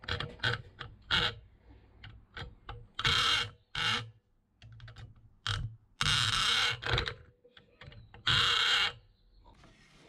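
Hammer blows and taps on a thin metal sheet clamped in a steel bench vise: a run of sharp knocks, broken by three louder harsh bursts of up to a second each. The sheet is not giving way.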